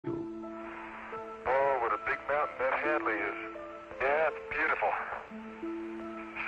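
A voice over a narrow-sounding radio link, talking in short bursts, over background music of long held notes that step from pitch to pitch.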